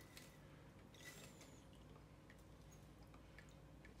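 Near silence, with a few faint soft clicks and drips as wet, alcohol-soaked lemon peels slide out of a glass jar into a wire mesh strainer.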